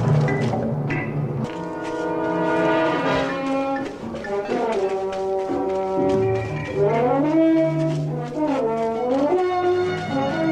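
Film score music: sustained chords of held notes, with several lines sliding up and down in pitch in the second half over a held low note.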